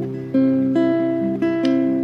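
Acoustic guitar playing a slow run of plucked notes that ring on over a held low bass note, with a new note about every half second.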